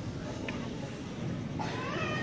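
Audience murmuring in a hall, and about a second and a half in a short, high, rising cry from one voice.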